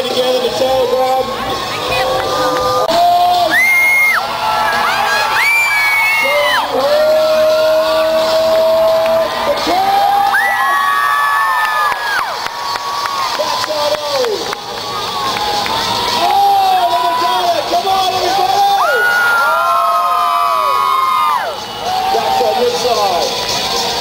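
Large audience cheering and screaming, with many high children's voices holding long shouts that overlap and come and go throughout.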